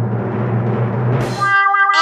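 Timpani drum roll building to a reveal, ending about one and a half seconds in with a crash and a held brass chord.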